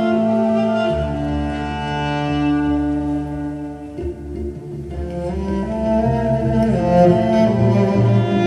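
Two electric cellos bowed live through amplification, playing long held notes over a low sustained bass note. The notes change about halfway through, and the music grows louder toward the end.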